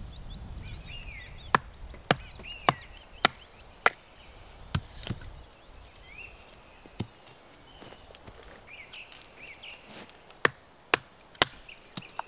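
Batoning firewood: a wooden baton strikes the spine of a large knife set in a stick standing on a log chopping block, driving the blade down to split it. Five sharp wooden knocks come about half a second apart, then a few scattered strikes, then three more near the end.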